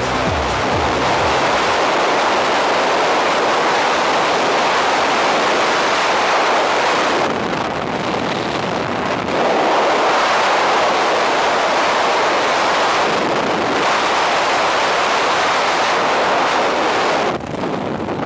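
Freefall wind rushing hard over the helmet camera's microphone, a steady loud roar of air. It drops off sharply about a second before the end as the parachute opens and the fall slows.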